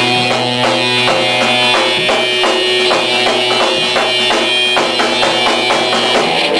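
Live rock band playing loud: a held low note under a steady pulse of strokes, about three a second.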